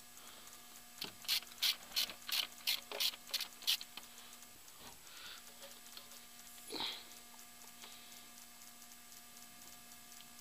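Hand ratchet wrench clicking in a quick even run, about eight clicks at roughly three a second, as a valve cover bolt on a big-block V8 is turned. A single short, softer scrape or knock follows a few seconds later.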